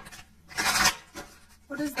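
Tarot cards rustling as they are shuffled: a short rasping burst about half a second in and a fainter one just after.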